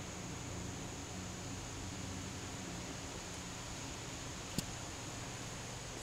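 Steady background hiss with a low hum: quiet room tone with no cat calls, and one faint click about four and a half seconds in.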